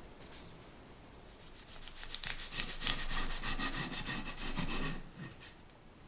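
Serrated bread knife sawing through the edge of a sponge cake sheet on parchment paper, trimming it in quick back-and-forth strokes. The sawing starts about two seconds in and stops about a second before the end, after faint rustling.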